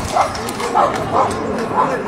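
A small dog yapping, a few short barks spread through the moment, over crowd chatter, with a horse's hooves clopping on the paved street.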